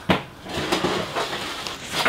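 Rustling and handling of paper seed packets being sorted through, with a few light clicks.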